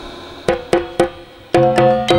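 A live accompaniment band strikes up: three sharp percussion hits about a quarter second apart, then from about one and a half seconds in a tune of repeated pitched struck notes over a low sustained bass.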